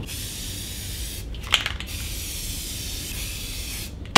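Aerosol spray paint can hissing as it sprays paint, with a short break and a small click about a second and a half in before the hiss resumes.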